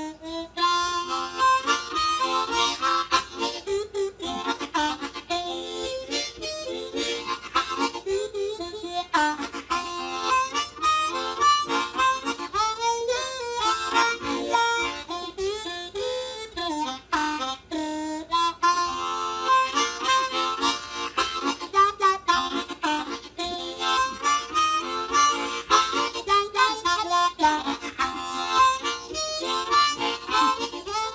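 Solo blues harp (diatonic harmonica) played cupped in both hands, a rhythmic blues line with bent notes.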